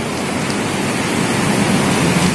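A steady rushing noise with no distinct events, holding an even level throughout.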